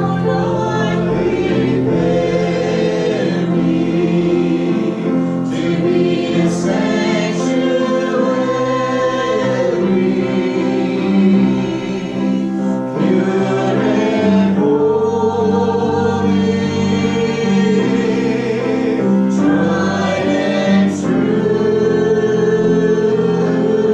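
Congregation singing a gospel chorus together, many voices holding long notes.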